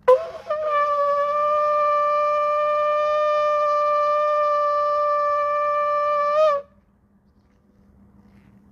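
Shofar (ram's horn) blown in one long, steady blast of about six seconds, with a brief broken start before the note settles and a small upward flick just before it cuts off.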